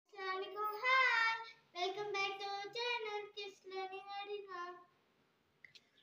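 A young girl singing a short tune in several phrases of held notes, stopping about five seconds in.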